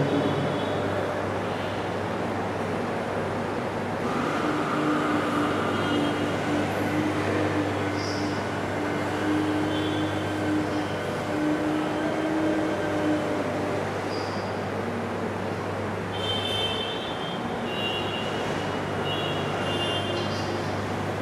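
Steady room noise of a lecture hall: an even hum and hiss with a low droning tone underneath, no speech.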